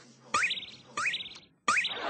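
An electronic chirp sound effect played three times, about 0.7 s apart. Each is a quick rising whistle that levels off into a short warbling tone.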